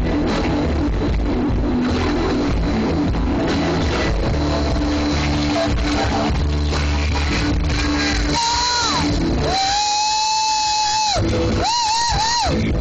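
Loud rock music with guitar and drums. Near the end a voice cries out, then holds one long high note for almost two seconds.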